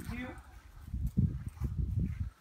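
Footsteps on a grass lawn as a man and a small dog walk at heel: soft, irregular low thumps, starting about a second in, after the tail of a spoken word.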